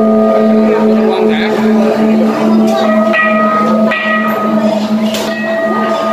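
Held bell-like ringing tones at several pitches, the lowest pulsing about three times a second, over the murmur of a crowd.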